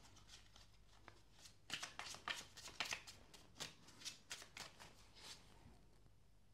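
A tarot deck being shuffled by hand: a faint run of quick, soft card rustles and flicks lasting about four seconds, stopping shortly before the end.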